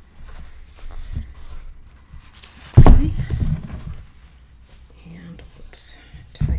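A sharp thump about three seconds in as a handmade paper mini album is set down on a glass craft mat. Softer handling sounds of paper and ribbon come before and after it.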